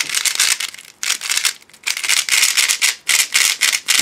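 Cubicle Aolong V2 3x3 speedcube being turned fast by hand: the plastic layers click and clatter in quick runs of turns, with brief pauses between runs.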